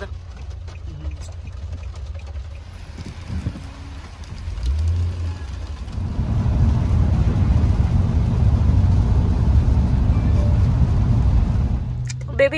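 Low rumble inside a car's cabin, the sound of the car running on the road, growing louder from about halfway through.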